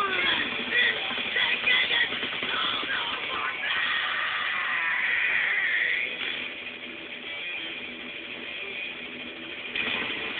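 Music with guitar playing, louder in the first six seconds and quieter for the rest.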